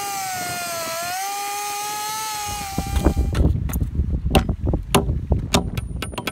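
Chainsaw running at high revs as it cuts a flat notch into a round wooden fence rail, its pitch dipping briefly under load, then cutting off suddenly a little over three seconds in. After that a hammer gives a rapid series of sharp strikes, about two to three a second, driving a pole barn spike (shank nail) through the rail into the post, with wind rumbling on the microphone.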